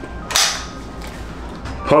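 A single sharp crack about a third of a second in, fading quickly.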